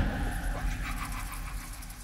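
The fading tail of a loud trailer hit, with a run of quick, high, animal-like squeaks over it that die away with the echo.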